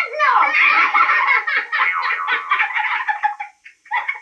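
Excited voices giggling and squealing over light music from a children's TV programme, breaking off about three and a half seconds in.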